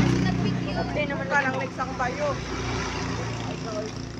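A motor vehicle's engine humming close by, loudest at the start and fading away, with people talking over it.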